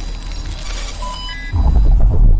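Sound effects of an animated logo reveal: a rising rush of noise with a few short electronic beeps at different pitches about a second in, then a deep bass boom about one and a half seconds in that carries on pulsing.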